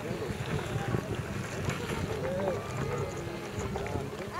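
Wind buffeting the microphone with a low, steady rumble, with distant voices faintly in the background.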